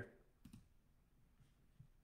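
Near silence: room tone, with a faint click about half a second in and another near the end.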